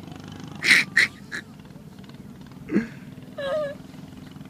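A small puppy yapping in play while tugging: three short, sharp yaps close together about a second in, then more brief vocalizing near the end.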